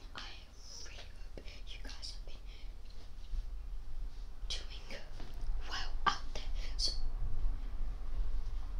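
A person whispering close to the microphone in short breathy bursts, busiest in the second half, over a steady low hum.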